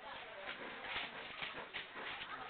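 Faint background voices with a few light, scattered knocks.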